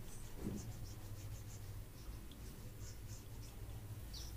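Faint rubbing of marker writing being wiped off a whiteboard, heard as short scattered scratchy strokes over a steady low hum.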